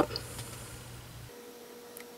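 Faint hiss of fine embossing powder pouring from a bottle onto paper in a plastic tray. A faint steady hum comes in after about a second.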